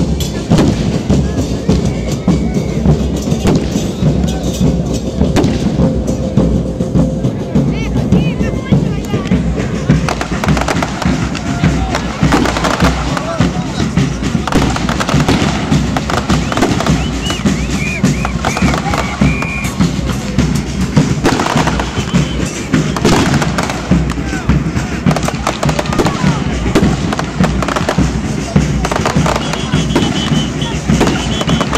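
Fireworks: rockets and firecrackers going off in a continuous string of sharp bangs.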